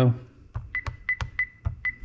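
Honeywell 6290W touchscreen alarm keypad giving four short high beeps as a four-digit code is entered, one beep per key press, with light clicks of the finger tapping the screen.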